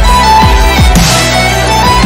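Electronic background music with a heavy bass line: several bass notes slide sharply down in pitch, and a wash of high, cymbal-like hiss comes in about a second in.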